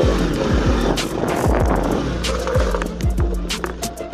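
Bajaj Pulsar NS200's single-cylinder engine running at low revs as the bike creeps up a steep, rough concrete path, with repeated sharp knocks and the crunch of tyres on grit.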